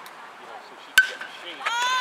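Aluminium baseball bat hitting a pitched ball about a second in: one sharp ping with a brief metallic ring. A loud shout from a spectator follows near the end.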